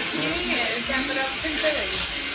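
A steady blowing hiss runs throughout, with people's voices talking quietly underneath.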